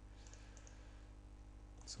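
Near silence: a faint steady hum of room tone, with a few soft computer-mouse clicks about half a second in.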